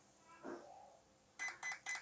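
An RC car's ESC gives three short electronic beeps in quick succession near the end, while its program button is held. This counts up to programming item three, the low voltage cutoff.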